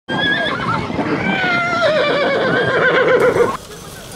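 A horse whinnying: one long call with a shaking tremolo, falling steadily in pitch, cut off abruptly about three and a half seconds in.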